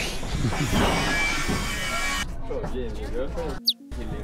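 Indistinct voices with background music, cutting out abruptly for a moment near the end.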